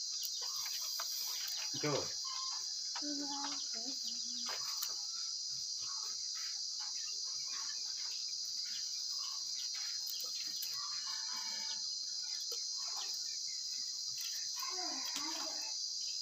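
Steady, high-pitched chorus of insects chirring without a break, the main sound throughout.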